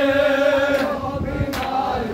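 Men's voices chanting a Shia noha lament in unison, holding one long note that fades about a second in. Near the end comes a sharp slap of matam, mourners striking their chests, which starts a beat of about one stroke every three-quarters of a second.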